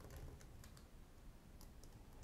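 Faint computer keyboard typing: a few scattered key clicks.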